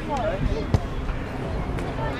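A short snatch of a spectator's voice, then a single sharp knock a little under a second in and a fainter tap near the end, over a steady low rumble.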